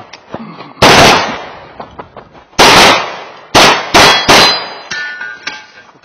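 Five pistol shots from a CK Arms RTS2 open-division race gun loaded to 9mm major: one about a second in, one near halfway, then three quick shots less than half a second apart.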